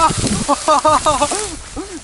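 A man laughing and letting out short excited cries, quick repeated bursts in the middle and single ones near the end, over a steady hiss of dry grass and reeds brushing against the moving sled.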